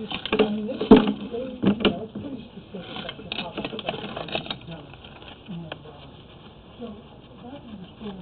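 A few sharp knocks in the first two seconds, then quieter irregular clatter, as a sewer inspection camera on its push cable is pulled back up the pipe toward the cleanout.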